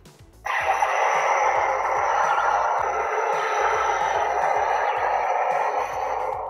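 Double-bladed replica lightsaber's built-in sound effect: a loud, steady electronic hum from its speaker that cuts in suddenly about half a second in.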